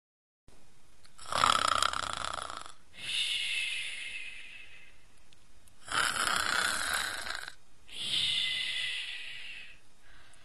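Comic cartoon snoring performed by a voice: two slow snore cycles, each a loud rasping in-breath followed by a softer, higher, hissing out-breath.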